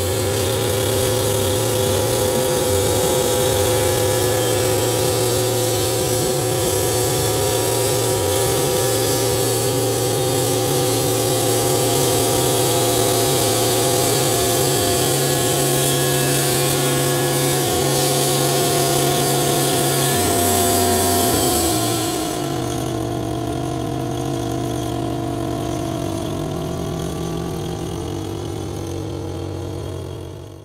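1987 Wood-Mizer LT40 portable bandsaw mill sawing a spalted maple log: the engine runs steadily under load with the hiss of the band blade cutting wood. About three-quarters of the way through the hiss of the cut drops away while the engine keeps running.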